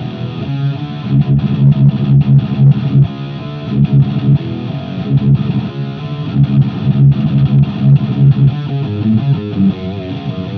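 Heavily distorted electric guitar riffing, a Deviant Guitars Linchpin with a Heathen Fenrir pickup run through a Neural DSP Quad Cortex amp profile into a Positive Grid Spark Cab, picked up by a Sennheiser e609 in front of the cab. The playing is stop-start chugging on the low strings, loud and dense in the low end.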